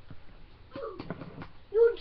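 A few light clicks and taps from handling the doll's feeding things, with a short voice sound about a second in; a girl's voice starts loudly near the end.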